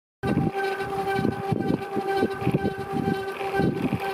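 Bicycle riding over asphalt, heard from a handlebar-mounted camera: a steady pitched hum from the moving bike runs throughout, over low, uneven rumbling from wind buffeting the microphone. The sound cuts in suddenly just after the start.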